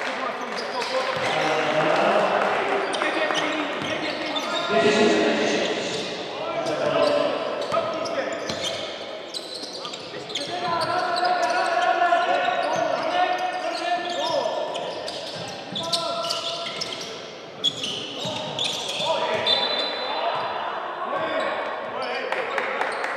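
Voices talking over an indoor basketball game, with the ball bouncing on the hardwood court and the echo of a large sports hall.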